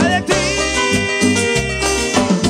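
Live Latin dance band playing, with electric bass, congas, drum kit, keyboards and a scraped metal güira. A high melody note is held through most of it over a pulsing bass line.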